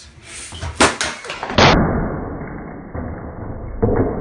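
A wooden box being smashed apart: two sharp knocks, then a loud crash of breaking wood about one and a half seconds in, and another thud near the end.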